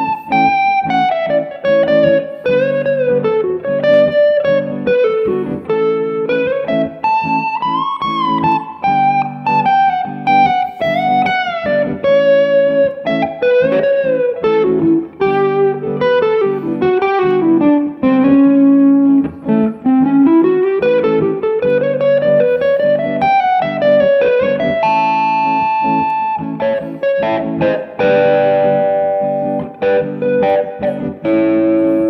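Overdriven PRS electric guitar playing a lead line in A Mixolydian, with string bends and vibrato, over a looped A major to G major chord backing. Near the end a few chords are left to ring.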